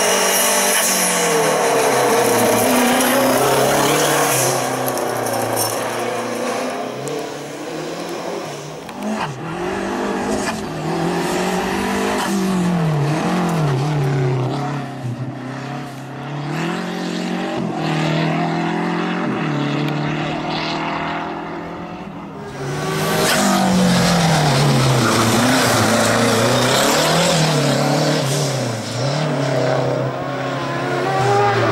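Renault 5 slalom car's engine revving hard, the pitch climbing and dropping every second or two as the driver goes on and off the throttle. It eases off briefly around two-thirds of the way in, then comes back loud.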